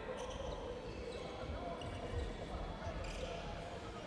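A basketball being dribbled on a gym's hardwood floor during play, repeated low thumps, with a few short high squeaks and voices in the large hall.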